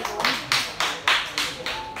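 Hands clapping in a steady rhythm, about three claps a second, stopping shortly before the end.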